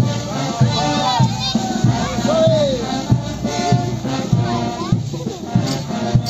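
Morenada band music with a steady drum beat about twice a second, mixed with the clacking of the dancers' matraca rattles and voices calling out over it.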